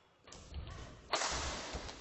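Badminton rally in a sports hall: players' footfalls thudding on the court, then a sharp crack of a racket hitting the shuttlecock about a second in, followed by a loud rush of noise that carries on to the end.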